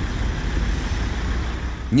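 Steady road traffic noise: a low rumble with a hiss over it.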